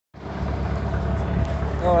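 Fishing boat's engine running with a steady low rumble.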